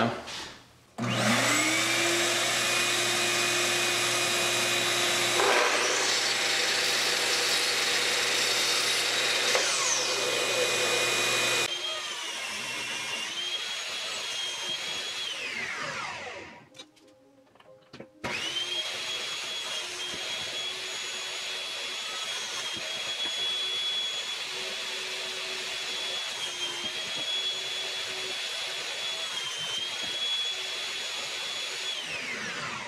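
Sliding miter saw motor starts about a second in with a rising whine and runs steadily while cutting a quilted maple neck blank, then winds down with a falling whine. After a brief near-silence, another power tool's motor starts abruptly and runs steadily with a high whine.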